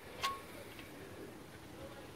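A single small metallic click about a quarter second in, otherwise faint background: the oil drain plug touching the oil pan as it is offered up to be threaded in by hand.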